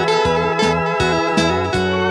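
A small live band playing a hymn: electric guitars and electronic keyboard over a steady beat.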